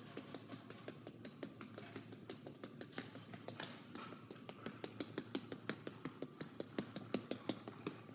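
Footsteps on a hardwood gym floor: a run of quick light taps, about four a second, growing louder in the second half.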